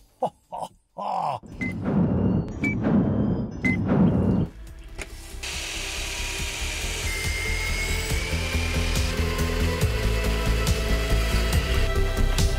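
A power tool running in a few short bursts, followed by steady background music.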